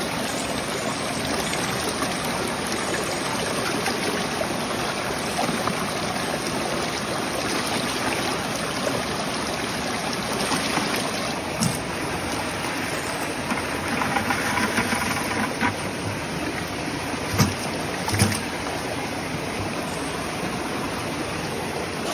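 Creek water rushing steadily, with water sloshing in a plastic bucket as a sluice mat is rinsed out and the bucket is emptied into a gold pan. A few short knocks come in the second half.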